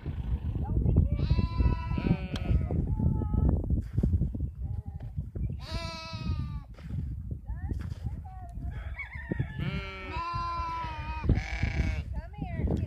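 Sheep in a flock bleating, several long quavering calls from different animals: a pair a second or so in, one about six seconds in, and a cluster toward the end.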